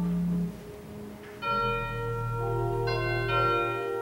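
Slow instrumental music of held, bell-like chords that change every second or so, with a brief lull about half a second in before the next chord enters.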